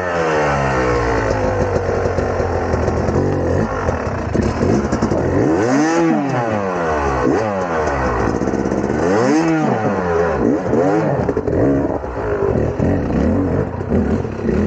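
Yamaha two-stroke dirt bike engine running just after starting, revved up and down again and again as the bike is worked up a rocky climb. There are two big revs, about six and nine and a half seconds in.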